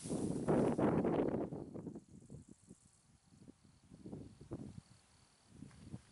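Footsteps swishing through tall dry grass, loudest in the first two seconds and then fainter and irregular as the walker moves away. Behind them an insect chirps in short, evenly spaced high pulses.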